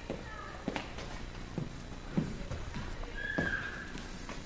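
Irregular footsteps and knocks on a hard floor as someone walks along carrying a cardboard sheet, with a short high squeak near the end.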